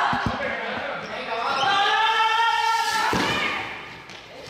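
Balls bouncing on a sports-hall floor: a few quick thuds right at the start and another about three seconds in, ringing in the large hall, with a voice calling out loudly in between.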